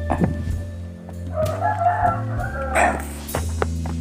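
Background music with steady low tones, and an animal call with a wavering pitch sounding over it from about one and a half seconds in, followed by a short noisy burst near three seconds.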